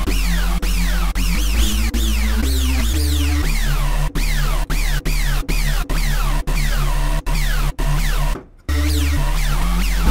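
Xfer Serum software synthesizer playing a harsh FM bass patch with a deep sub oscillator underneath. Each note carries a falling sweep that repeats about twice a second. From about four seconds in, the notes come as short, quick stabs.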